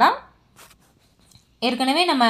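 A woman speaking, with a pause of about a second and a half in which a faint, brief rustle or scratch is heard, such as a hand brushing over cloth.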